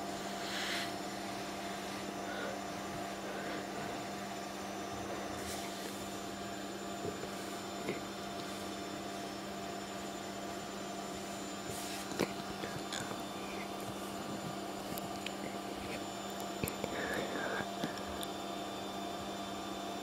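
A steady, even hum runs throughout, with a few faint clicks now and then.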